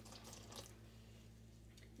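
Faint sound of almond milk being poured in a thin stream onto mashed potatoes in a steel pot, over a steady low hum.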